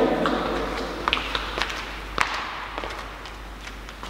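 A few scattered light taps and knocks echoing in a large church, the loudest a little over two seconds in.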